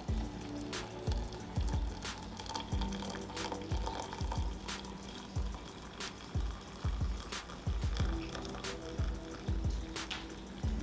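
Just-boiled water poured in a thin, steady stream from a stainless steel saucepan into a ceramic mug, filling it over a tea bag. Background music with a steady beat plays throughout.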